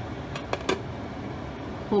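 Steady hiss at a gas stove where a pot of rice and peas cooks over a lit burner, with a few short clicks about half a second in.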